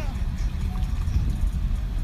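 Car driving slowly, heard as a steady low rumble, with faint distant voices.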